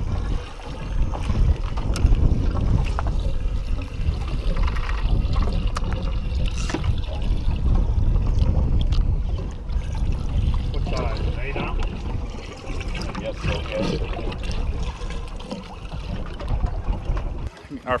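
Wind buffeting the microphone and sea water sloshing against the hull of a small fishing boat at sea.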